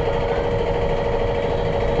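Steady mechanical hum of a running motor: an even, unchanging drone with a constant mid-pitched tone.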